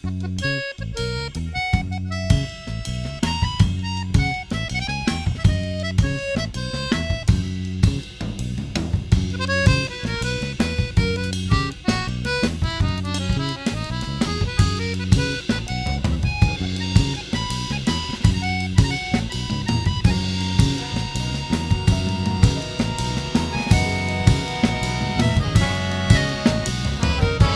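Jazz ensemble music led by a busy drum kit groove of snare, rimshots and bass drum. Under it runs a steady bass line, with quick melodic lines from the other instruments above.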